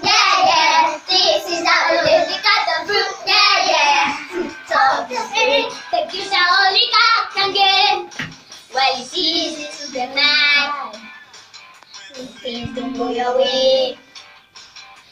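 A group of young children singing an action song together, line after line, dipping to a brief lull about eleven seconds in before the singing picks up again.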